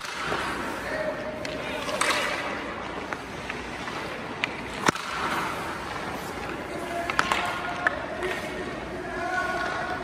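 Hockey pucks shot with a stick on indoor ice: a handful of sharp cracks a couple of seconds apart over a steady rink hiss.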